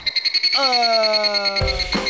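A comedic edited-in sound effect: a fast, high-pitched pulsing tone. Over it a voice draws out a hesitant "eh..." that slowly falls in pitch, from about half a second in until near the end.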